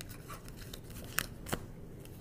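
Tarot cards being gathered up off a cloth-covered table: faint sliding of cards, with two sharp clicks of card against card a little past a second in.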